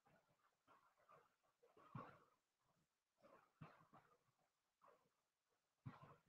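Near silence, broken by faint, short scattered sounds every second or so, too quiet to name.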